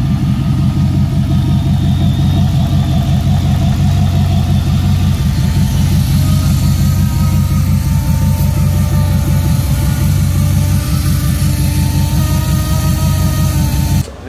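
LS3 V8 in a 2009 Chevrolet Colorado idling loudly and steadily, a deep, pulsing engine note with a faint whine above it.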